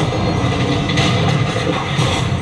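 Film sound effects of a car being hurled and tumbling: a loud, continuous low rumble of crashing and grinding metal, with a sharper crash about a second in.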